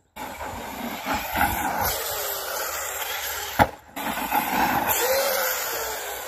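Large-scale RC car running on dirt, a steady hiss of electric motor and tyres, with one sharp knock about three and a half seconds in.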